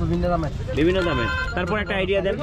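People talking, with a short high steady tone, made of several pitches at once, sounding for about half a second around a second in.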